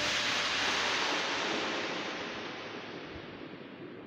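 A hissing wash of noise at the close of the background music, fading steadily and growing duller as the high end drops away.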